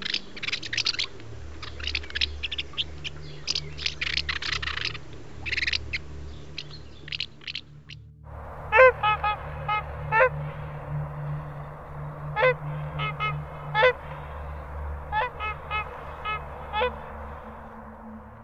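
Barn swallows twittering in fast, dense chirps for about the first eight seconds. Then, after a sudden change, a swan gives short honking calls in quick runs of three to five over a steady hiss.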